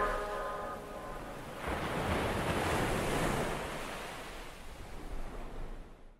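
The last notes of the song fade out, then about a second and a half in a rushing wash of noise like ocean surf swells up and slowly fades away.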